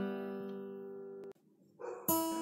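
Strummed acoustic guitar music: a chord rings and fades away, cuts off abruptly partway through, and the music starts again near the end.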